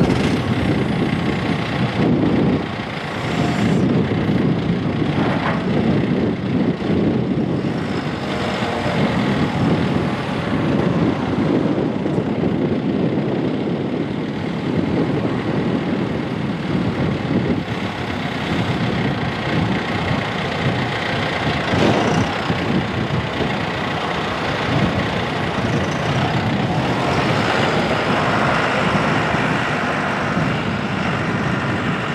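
A John Deere 6105E tractor's four-cylinder turbo diesel engine running steadily as the tractor is driven.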